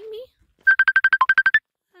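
Phone ringtone: a fast run of about a dozen short high beeps, one note dipping lower, lasting about a second and starting just over half a second in, part of a repeating ring.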